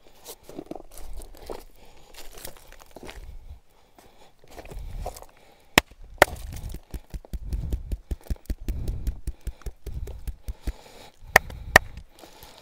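Hands massaging bare skin: rubbing and handling noise, then in the second half a fast run of sharp taps on the skin about five a second, with a few louder smacks, two of them close together near the end.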